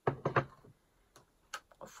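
Objects handled on a hard surface: a quick cluster of knocks at the start, then a faint click about a second in.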